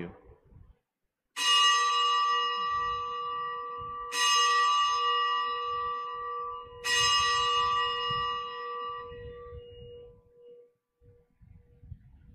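Altar bell struck three times, a stroke about every two and a half to three seconds, each ringing out and fading, the last dying away near the end. It marks the elevation of the consecrated host at Mass.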